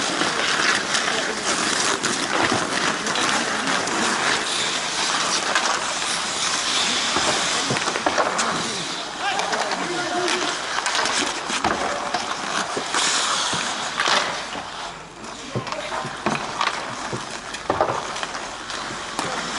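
Outdoor ice hockey in play: skate blades scraping and hissing on the ice, with many sharp clacks and knocks of sticks and puck, and players' voices calling out.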